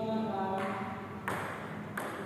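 A person's drawn-out call in the first second, then a sharp click of a table tennis ball a little over a second in and another near the end.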